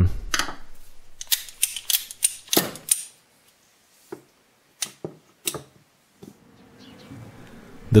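A series of sharp metallic clicks, about a dozen with short gaps, from a freshly reassembled Rogers & Spencer percussion revolver whose action is being worked by hand.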